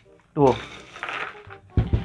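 Foil snack packets rustling as a hand moves across a pile of them, with a dull thump near the end.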